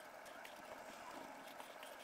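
Faint rubbing of a terry towel buffing cleaner off a glass panel, a soft hiss with a few light strokes.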